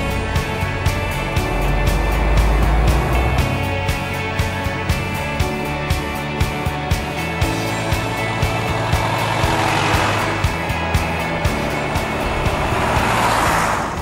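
Background music with a steady beat laid over the running and passing of an old Mercedes-Benz LF8 fire engine, its engine rumbling low early on. A rushing swell of vehicle noise comes about ten seconds in and again near the end.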